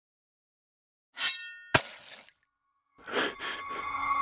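A sudden crash with a ringing, clinking ring about a second in, then a sharp single click just after, both dying away within a second. More sound starts about three seconds in, with a held ringing tone.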